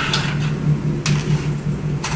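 Cordless drill running, boring a hole through a metal dock post, with a few sharp clicks.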